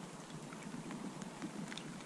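Light rain pattering steadily, faint, with scattered small drop ticks.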